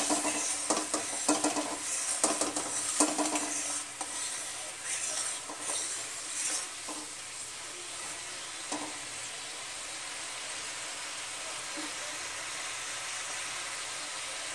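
Mustard-paste, garlic and turmeric masala sizzling in mustard oil in a pan. For the first several seconds it is stirred with scraping knocks against the pan, and after that it sizzles steadily on its own.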